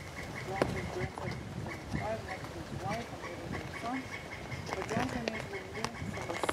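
Short animal calls come one after another over a steady high tone that pulses about four times a second.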